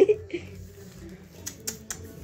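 Three short, sharp clicks about a fifth of a second apart near the end, against the quiet of a small room.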